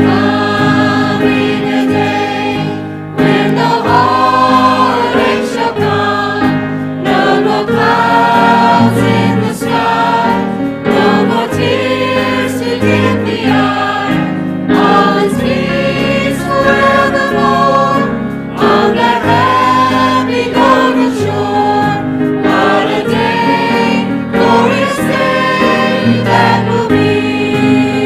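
A mixed church choir of men and women singing a sacred piece together, with held instrumental notes sounding steadily beneath the voices.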